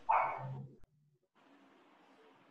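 A dog barks once, briefly, heard through a video-call microphone.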